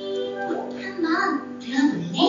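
Music with a child's voice singing over sustained keyboard notes.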